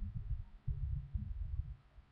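Faint, irregular low rumble with no clear source, stopping just before the end.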